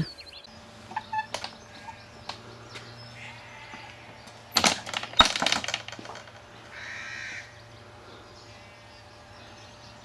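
A crow cawing a few times over a quiet outdoor background, loudest about halfway through.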